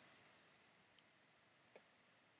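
Near silence, broken by a faint click about a second in and another brief faint click near the end.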